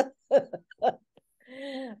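A woman laughing: three short, separate bursts in the first second, then a quieter, drawn-out voice sound near the end.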